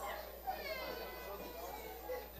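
Faint background voices in the room, with a thin high-pitched call, like a small voice or a meow, that slides down in pitch from about half a second in.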